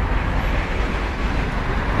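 Steady road and engine noise of a moving car heard from inside the cabin: an even low rumble with a hiss of tyres and wind.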